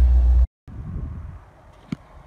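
1985 Corvette's 5.7 L V8 idling, a steady low rumble heard from inside the cabin that stops abruptly about half a second in. A much quieter stretch follows, with a single click near the end.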